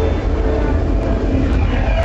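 Loud dance-club noise: a steady heavy low rumble with a hissing wash over it and crowd voices, the tune above the bass dropping out.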